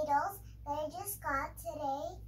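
A young girl's voice in a few short phrases with a rising and falling pitch; the words are not made out.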